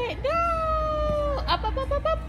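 A woman's drawn-out, sing-song "yaaay" cheer, held on one high note for over a second, then a few short quick higher notes near the end.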